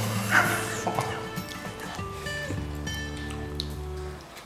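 Background music with held notes over a low bass line, and a brief noisy sound, the loudest moment, a little under half a second in.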